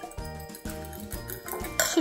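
Background music with a steady beat, over light clinking of a metal fork beating eggs in a glass bowl.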